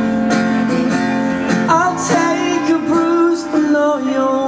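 Live song: an acoustic guitar strummed, with a man singing over it.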